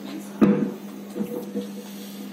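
A single sharp knock about half a second in, followed by a few lighter scuffs, over a steady low hum.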